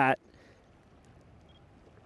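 A man's voice finishing a short phrase right at the start, then faint steady outdoor background noise, close to silence.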